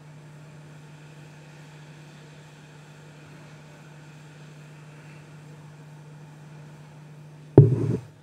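Hot air rework station blowing on a low air setting while it reflows solder under a board connector: a steady airy hiss over a low hum. A sudden loud knock comes just before the end.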